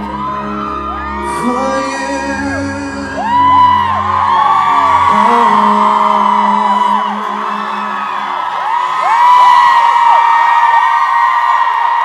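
Live pop band holding a closing chord that stops about five seconds in, under a crowd of fans screaming and cheering, with the screams growing louder after the music ends.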